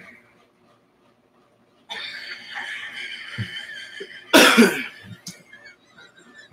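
A person's short cough about four and a half seconds in. Before it there is near silence, then a couple of seconds of a thin, steady hiss.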